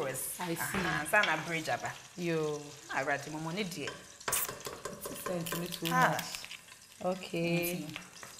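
Wooden spatula stirring and scraping thick banku dough in a pot. The strokes come in repeated pitched, squeaky rubs of about a second each.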